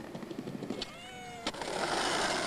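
Skateboard on concrete: a sharp clack about one and a half seconds in, then the steady rasp of the wheels rolling on pavement. Just before the clack comes a short wavering wail, falling slightly in pitch.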